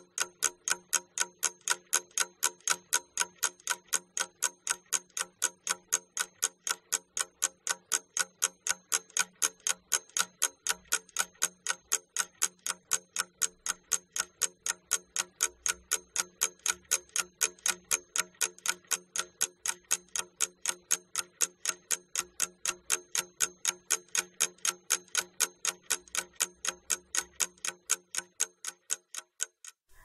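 Clock-ticking sound effect: steady, even ticks, a few a second, counting off the time given to complete a task.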